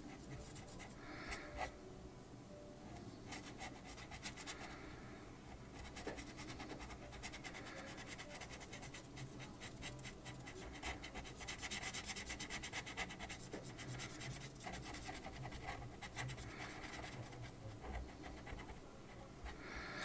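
Blue felt-tip pen scratching on paper in many quick, short strokes as a small area is coloured in. It is faint, a little louder about halfway through.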